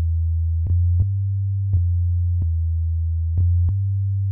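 Sine-wave bass soundfont (SineBass2) playing through Reason's NN-XT sampler: a run of deep, held bass notes that run into one another, each new note starting with a small click.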